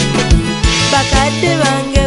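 Kadongo Kamu local-band music: a steady drum beat about twice a second with a bass line, under a melodic line that glides up and down.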